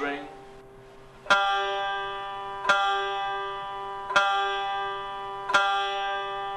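Plectrum banjo's open strings plucked four times, about a second and a half apart, each note ringing and fading: tuning the bass and G strings to pitch.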